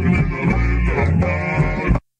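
Recorded cumbia band music with a steady bass line, percussion and held melody notes, cutting off suddenly at the end.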